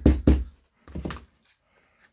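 Small mallet lightly tapping two pieces of leather glued with contact cement, pressing the bond and working out air bubbles: the last two quick taps come in the first half second, then they stop. A faint sound of the leather being handled follows about a second in.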